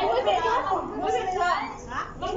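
Only speech: several women's voices chatting in a group.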